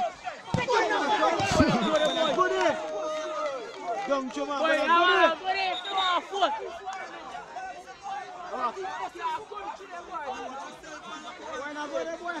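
Several voices shouting and calling out at once across a football pitch, players and onlookers overlapping, busiest in the first half. Two brief low thumps come within the first two seconds.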